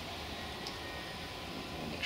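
Steady background noise with no distinct sound events, and no hiss of refrigerant escaping from the can.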